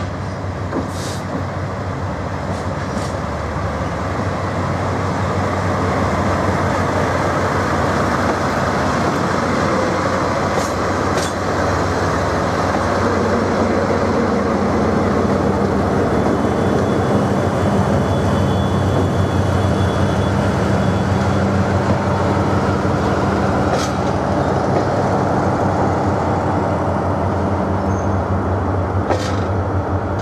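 Freight train headed by a DD51 diesel-hydraulic locomotive arriving and rolling past. Its diesel engines drone steadily and grow louder over the first few seconds, followed by the rumble of tank cars, with a few sharp clicks from the wheels on the rails.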